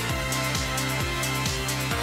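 Electronic theme music with a steady beat: a deep drum hit about twice a second under bright high ticks and held synth notes.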